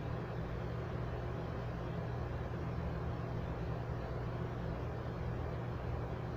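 Steady background hum with a low, even hiss and no distinct events.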